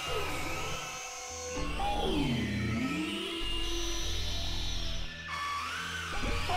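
Experimental electronic music played on a Novation Supernova II synthesizer: low held drone tones under pitched tones that glide down and back up, with brief drops in loudness about a second in and again just after five seconds.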